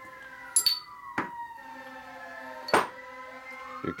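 An emergency vehicle's siren wails in the background, its pitch sweeping slowly up and down. Over it come sharp metallic clinks as steel transmission gears and parts are handled on a steel workbench; the loudest clink is near the end.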